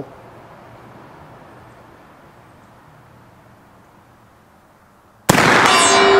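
A single shot from an original Remington Rolling Block single-shot rifle in .45-70 loaded with black powder, about five seconds in, after a quiet pause. At once a steel gong rings with a steady tone, hit by the bullet.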